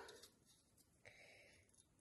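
Near silence: room tone, with a faint soft rustle lasting under a second, starting about a second in.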